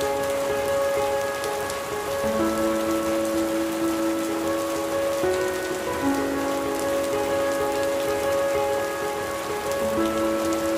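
Steady rain ambience layered over slow music of long held notes, the chord shifting about two seconds in, again around five and six seconds, and near the end.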